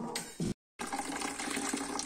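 Hot beer wort pouring in a thin stream into a plastic fermenter bucket, splashing onto a foaming surface with a steady rush. The sound drops out completely for a moment about half a second in, where the recording cuts.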